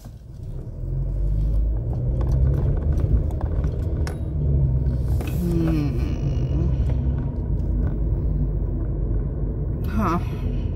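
Car cabin road noise: a steady low rumble of tyres and engine as the car drives, swelling up about a second in and staying loud.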